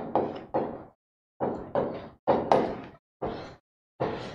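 A pen knocking and tapping against a digital writing board as words are written and underlined: about seven short knocks, irregularly spaced, each dying away quickly.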